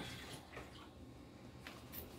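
Quiet room with a few faint small ticks and light handling noises.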